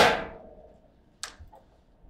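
Foosball ball struck hard on a table football table: a loud crack right at the start that rings out for about half a second, followed by a single sharp click a little over a second later.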